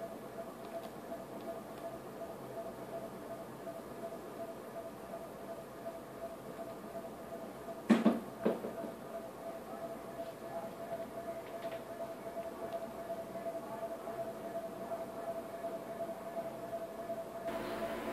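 Faint, steady electrical whine from a coil driven with high-frequency AC by a halogen-lamp ballast. There are two sharp clicks about half a second apart, roughly halfway through.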